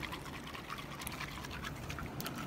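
Sea water lapping and trickling steadily at a low level, with a few faint small splashes.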